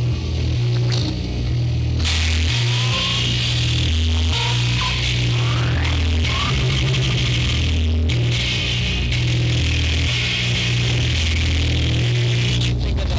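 Experimental electronic noise music: a loud low bass drone stepping between pitches, overlaid from about two seconds in by a band of hissing static that drops out briefly around eight seconds. A few short rising whistle-like glides sound in the middle.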